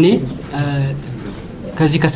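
Speech: a man talking in Amharic into microphones, with a drawn-out syllable held at a level pitch about half a second in, then a short pause before he goes on.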